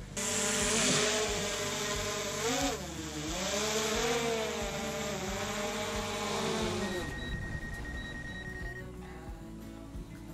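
DJI Air 2S drone flying close by: a buzzing propeller whine whose pitch wavers up and down as it manoeuvres, dying away after about seven seconds.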